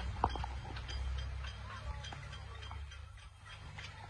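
One person clapping hands in the distance: faint, sharp claps over a steady low rumble.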